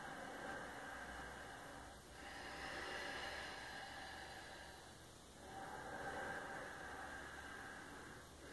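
Faint, slow human breathing, with one long breath swelling and fading about every three seconds.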